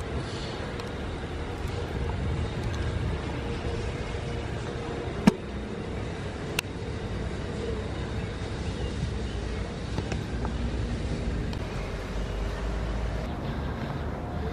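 Steady low outdoor background rumble, with two sharp clicks about five and six and a half seconds in.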